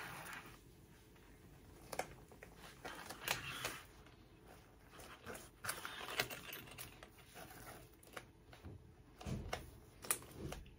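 Fabric rustling and scattered small plastic clicks as a clipped-together backpack is handled and its sewing clips are adjusted along the edge. Quiet, in uneven patches, with a few sharp clicks.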